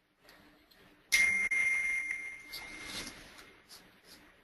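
A bright ding about a second in, sounding again a moment later, its ringing tone fading over about two seconds.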